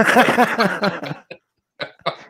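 A man laughing hard in quick breathy bursts for about a second, then stopping.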